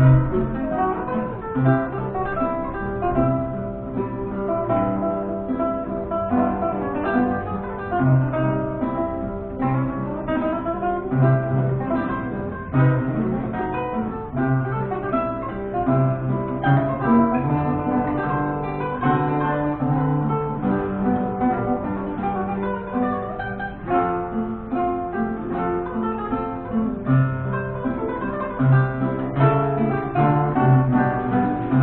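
Two romantic-era guitars, Pasquale Scala reproductions of c.1815 Antonio Vinaccia and Gennaro Fabbricatore models, playing a duet of plucked notes.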